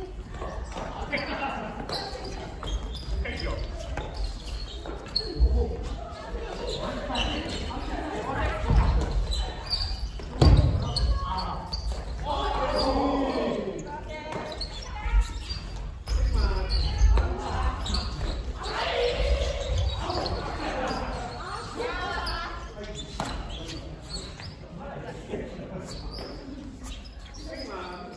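Family badminton rally in a gymnasium: rackets striking the shuttle and sneaker footfalls thudding on the wooden floor, with players' voices calling out, all echoing in the hall.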